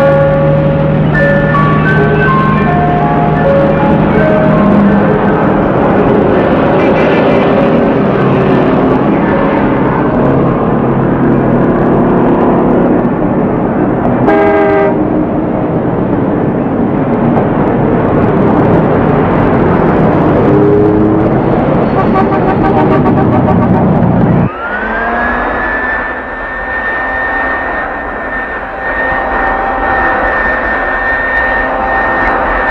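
Busy street traffic with an ice cream truck's chime melody, and a car horn sounding briefly about halfway. Near the end the sound cuts abruptly to a steady, rising high whine of a jet aircraft engine.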